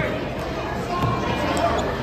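Spectators' indistinct voices and chatter echoing through a gymnasium.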